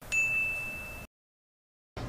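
A single high ding, a bell-like tone struck once that rings steadily and fades over about a second, then cuts off to dead silence. It is an edited-in transition sound effect.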